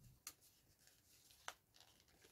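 Near silence, broken by a few faint ticks of fingers picking at a small sealed packet of sew-in labels, with one sharper click about one and a half seconds in.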